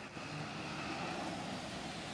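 Coach bus engine running steadily as the bus pulls away.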